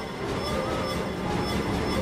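Theme music for a title sequence: held, slightly wavering tones over a dense, steady low rumble.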